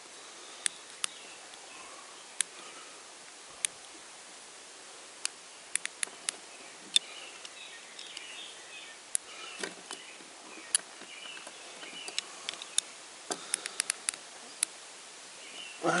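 Screwdriver working the screws of a metal two-piece hose clamp: scattered sharp clicks, some in quick little clusters, over faint outdoor background hiss. The screws are being tightened about as tight as they will go.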